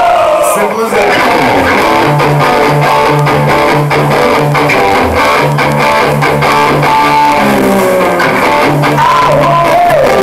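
Live rock band playing: electric guitar and bass guitar over drums, with a steady pulsing bass line. A male voice sings a held, curving 'whoa' at the start and again near the end.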